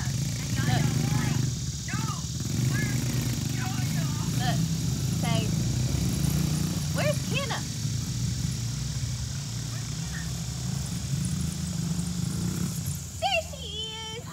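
Small engines of a kids' mini dirt bike and quad running steadily as they ride around, dropping away near the end.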